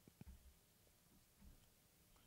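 Near silence: a pause between speakers, with only faint room tone.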